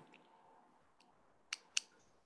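A quiet pause with a faint tick about a second in, then two short, sharp clicks about a quarter second apart near the end.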